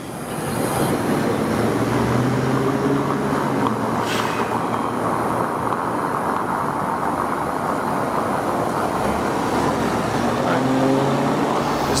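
Steady road-traffic noise: cars running on a street, with a faint engine hum in the first few seconds.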